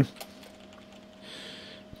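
A few faint computer keyboard clicks, then a soft breath in near the end, over a low steady electrical hum.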